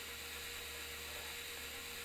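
A steady low hum with a faint even hiss over it, unchanging throughout.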